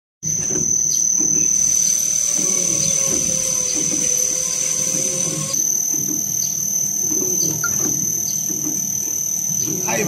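Stuffed-bun (baozi) making machine running: a steady high-pitched whine over low, repeated thudding about once or twice a second.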